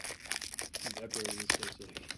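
Foil trading-card pack being torn open by hand: a run of sharp crinkles and rips of the metallic wrapper, with a few louder crackles about halfway through.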